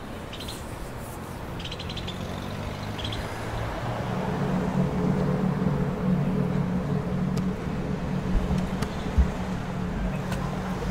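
Outdoor traffic ambience: a steady, low engine rumble that grows louder from about four seconds in, with a few faint high chirps about two seconds in.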